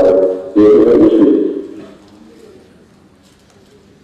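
A man's voice laughing, drawn-out and hooting, heard over a video link. It stops after about a second and a half, leaving low room noise.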